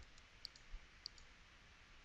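Near silence with a few faint computer mouse clicks, about three in the first second, as an expression is entered on an on-screen calculator.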